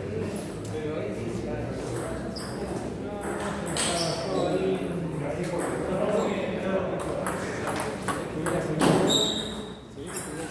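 Table tennis rally: the ball clicks off the bats and the table in short, uneven sharp hits, with voices talking in the hall.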